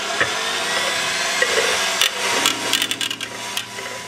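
Electric hand mixer running on a low setting, its beaters whisking a thin, runny mix of egg yolk, vinegar and lemon juice at the start of making mayonnaise. From about halfway, a run of clicks and knocks joins the motor as the beaters strike the bowl.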